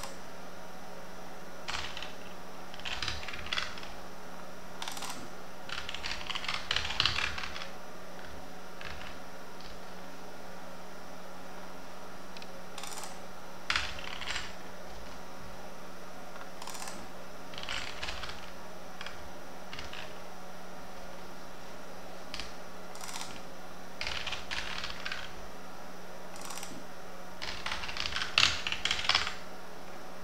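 Computer keyboard typing in short bursts of key clicks with pauses between, the busiest bursts about seven seconds in and near the end, over a steady low hum.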